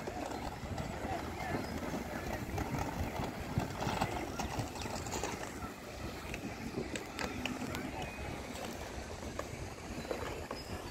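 Outdoor background noise with indistinct voices of people some way off and a few faint clicks; no single source stands out.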